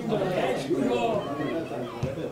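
Several people talking over one another: indistinct chatter of voices.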